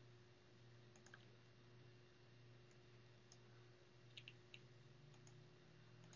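Near silence with a low steady hum, broken by a few faint computer mouse clicks: a pair about a second in and a small cluster around four seconds in.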